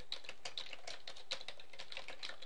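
Typing on a computer keyboard: a quick, uneven run of keystrokes, about five a second, as a short phrase is typed.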